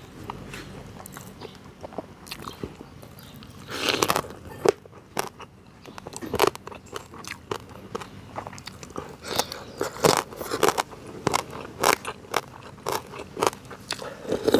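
A person chewing a mouthful of boiled frog close to a clip-on microphone: an irregular run of short, sharp wet mouth clicks and crunches, louder from about four seconds in.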